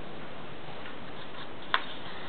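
A single sharp click about three-quarters of the way in, with a few faint ticks before it, over a steady hiss.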